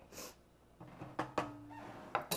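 Faint kitchen handling sounds: two light clicks of cookware or utensils, a fraction of a second apart, over a faint low hum, as the pan of meatballs is readied to go into the sauce.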